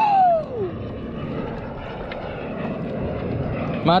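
A man's voice trails off in a falling 'ooh' in the first second, then steady rushing noise of wind and water around the kayak on open sea.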